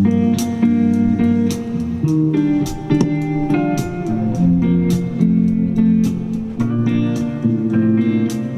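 Clean electric guitar playing a picked chord intro, live, with notes ringing over one another.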